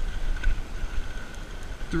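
Wind buffeting the microphone of a handlebar-mounted camera as an e-bike rolls along asphalt, a gusty low rumble, with a faint steady high whine throughout.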